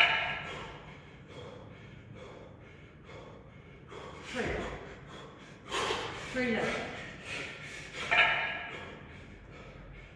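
A man breathing hard under exertion: several forceful, voiced exhalations and gasps, the loudest about eight seconds in, as he holds two 28 kg kettlebells in the rack late in a ten-minute long-cycle set.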